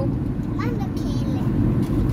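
Steady road and engine noise inside a moving car's cabin at motorway speed, with a brief voice about half a second in.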